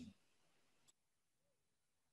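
Near silence in a pause between speakers on a video call, broken only by a faint click about a second in.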